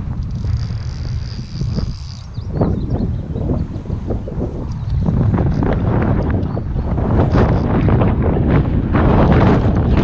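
Wind buffeting the microphone in gusts, heavier from about halfway, over the rush of shallow river water around the wading angler.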